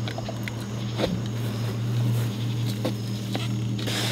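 A steady low machine hum, with a few faint knocks and rustles as a large grass carp is lifted off the ground and hung on a hand-held hanging scale.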